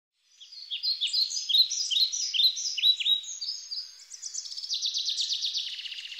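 Songbirds calling: short downward-sweeping chirps, several a second, then from about four seconds in a fast, evenly spaced trill.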